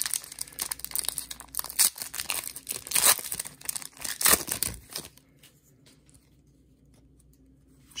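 Foil wrapper of a 2020 Panini Chronicles Draft Picks football card pack being torn open and crinkled by hand, a quick run of sharp rips and rustles that stops about five seconds in.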